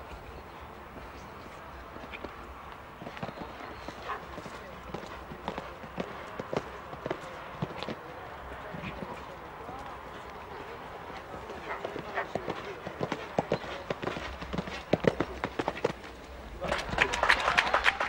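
Horse's hoofbeats cantering on a sand show-jumping arena, irregular dull strikes that grow louder and more frequent in the second half. A louder burst of noise comes near the end.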